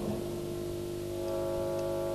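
Electronic keyboard holding one steady, sustained chord as the first song opens.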